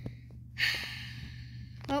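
A person's long breathy sigh, about a second long, beginning about half a second in, after a sharp click at the start.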